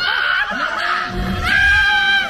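Riders laughing and shrieking in high voices, held and gliding in pitch, over the dark ride's soundtrack of music and effects, with a low rumble about a second in.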